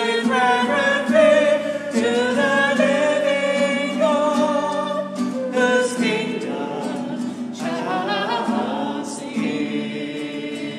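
A hymn sung in slow, sustained phrases, led by a woman's voice into a microphone.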